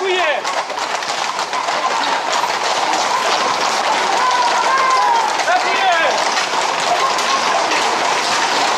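Many Camargue horses' hooves clattering on an asphalt street in a dense, continuous patter, with people shouting and calling over it.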